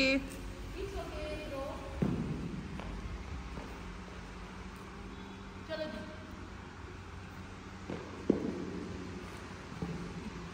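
Faint voices in the background, with two sharp knocks, one about two seconds in and one about eight seconds in, over a steady low hum.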